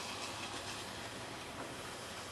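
Steady rushing noise of strong wind on the microphone.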